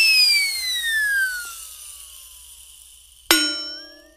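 Cartoon sound effects: a pitched boing-like tone slides slowly down and fades. About three seconds in, a sudden bell-like ding rings and dies away.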